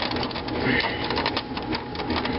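Plastic power-supply cable connectors and wires clicking and rustling as they are handled inside a desktop computer case, a dense run of small clicks.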